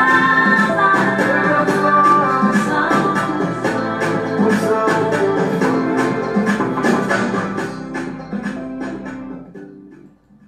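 Music playing with a steady percussive beat over sustained instrumental lines, fading out over the last few seconds.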